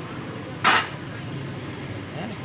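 Steady street traffic rumble, with one short, loud burst of hissing noise lasting about a quarter of a second, a little over half a second in.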